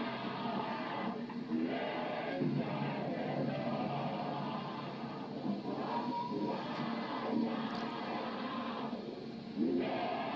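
A distorted, unintelligible voice speaking in what is presented as ancient Sumerian, from a horror film's supposed abduction recording, with no breaks in the sound.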